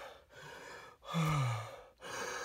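A man breathing hard: a breath in, then a voiced sigh that falls in pitch about a second in, as he catches his breath after running.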